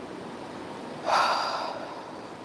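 A single short, sharp breath, about a second in and lasting under a second.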